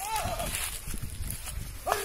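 Men shouting short calls, one at the start and another near the end, over a low uneven rumble.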